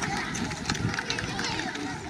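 Low background chatter of a large crowd of children, many small voices mixed together, with scattered light knocks and rustles and no single voice standing out.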